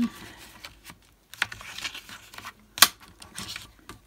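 A sheet of white card stock rustling as it is slid into place on a stamp platform, then sharp clicks of small holding magnets set down on the platform's magnetic base. The loudest click comes near three seconds in.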